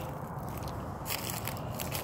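Footsteps on dry grass and brush, with light irregular crackling and crunching.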